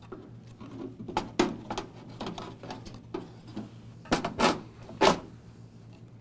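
EC fan assembly being fitted into a sheet-metal evaporator housing by hand: scattered scrapes and clicks, with a few sharper knocks about four to five seconds in as it seats.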